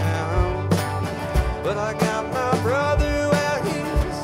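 Live folk and rock band playing over a steady drum beat. A high melody line slides up and holds a long note about two seconds in.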